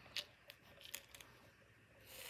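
Near silence with a few faint, short clicks and taps of a plastic M&M's Minis candy tube being handled, the clearest about a quarter second in.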